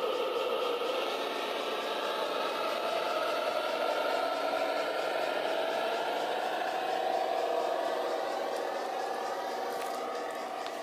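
G-scale model diesel shunting locomotive running along garden railway track. Its running gear gives a steady whine that rises slightly in pitch partway through.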